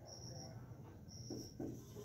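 Faint strokes of a marker pen writing on a whiteboard. Behind them, a faint high-pitched chirp repeats about once a second.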